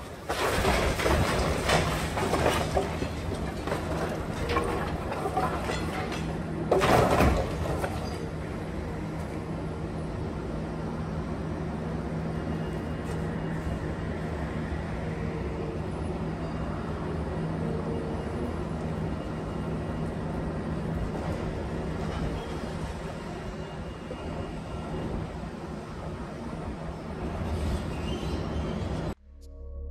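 Demolition excavator with crusher jaws breaking up concrete walls. For the first several seconds there is crunching and falling debris, with a loud crash about seven seconds in. After that the excavator's engine and hydraulics run steadily.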